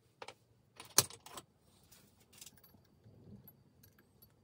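Sharp metallic clicks and clinks of small steel parts and tools being handled on a Sturmey-Archer AG hub clamped in a vise. A few clicks come near the start, the loudest about a second in and the last at about two and a half seconds, with only faint ticks after.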